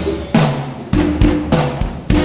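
Live band's instrumental break, led by drum kit hits about every half second with low notes sounding under them.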